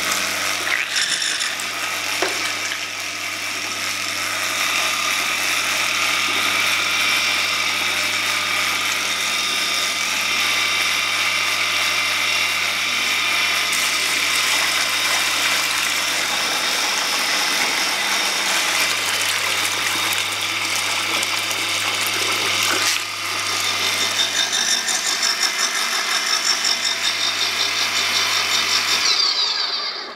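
Small 0.5 hp, 220 V electric water pump running with a steady hum while being primed: water is poured into its chamber to drive out the air that kept it from pumping. The sound changes briefly about 23 seconds in and runs unevenly after that, and the motor stops just before the end.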